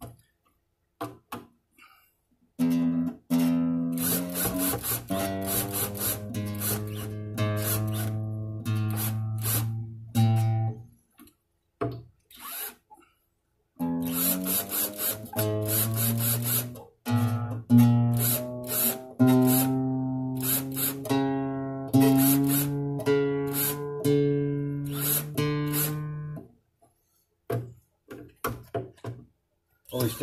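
A nylon-string classical guitar's freshly fitted strings plucked over and over, a low string rung again and again about once a second while it is brought up to standard pitch with the help of an electronic tuner. There are two long runs of plucking with a short pause between them.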